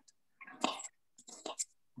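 Faint, breathy, whisper-like voice sounds in two short stretches, without any voiced tone.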